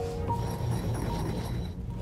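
Granite pestle grinding white powder in a granite mortar, an irregular gritty scraping, under background music.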